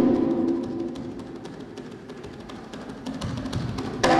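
Hand drums played with bare hands in a soft passage: the ringing tone of the drums fades over the first second or two, leaving quick, light finger strokes before louder playing comes back at the very end.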